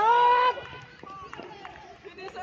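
A man's loud shout, rising in pitch and held for about half a second at the start, then fainter voices talking.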